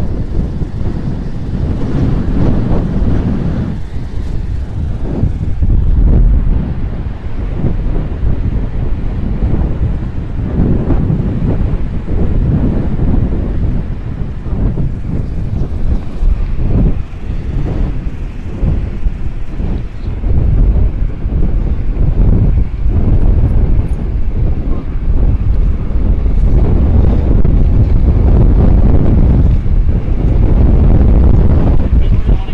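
Strong, gusty wind buffeting the phone's microphone in a hurricane squall, with heavy surf breaking on the shore underneath. The gusts grow stronger near the end.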